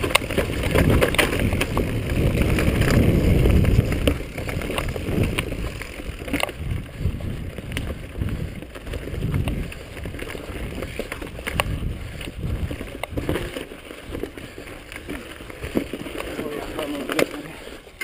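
A mountain bike rattling down a dirt trail, with wind rumbling on the bike-mounted camera's microphone and sharp knocks as the bike hits roots and bumps. The rumble is loudest in the first four seconds, then drops to a quieter rattle with scattered knocks.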